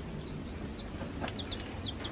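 Baby chickens peeping in a brooder: a run of short, high cheeps, each falling in pitch, several a second, over a low steady hum.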